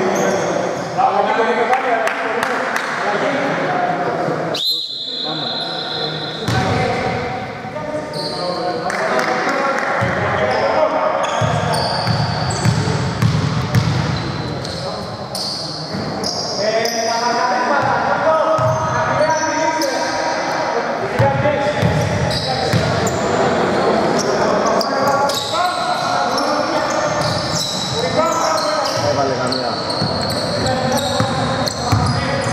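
A basketball bouncing on a hardwood gym floor during play, with players' voices echoing in the large hall. A short high steady tone sounds about five seconds in.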